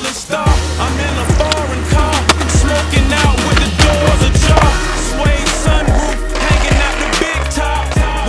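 Hip-hop track with a steady deep bass, mixed with skateboard sounds: wheels rolling on pavement and sharp clacks of the board popping and landing.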